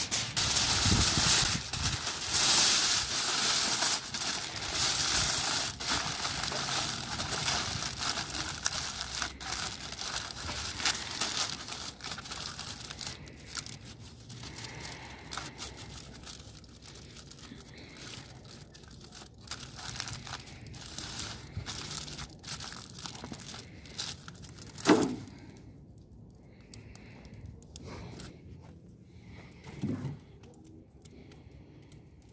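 Aluminum foil crinkling and crumpling as it is folded around a large cut of meat. It is loudest over the first dozen seconds, then turns to fainter scattered rustles and clicks. One loud thump comes about 25 seconds in.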